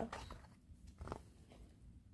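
Faint handling sounds of a CD case and its paper booklet: a few soft rustles and small taps as the booklet is opened out, the clearest about a second in.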